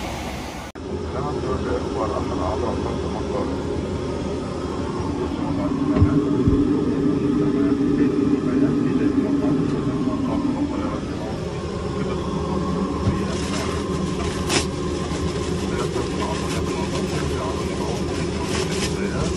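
Steady roar of a Boeing 777-200LR airliner cabin in flight, heard inside the lavatory, with a stronger hum for several seconds in the middle and a single sharp click later on.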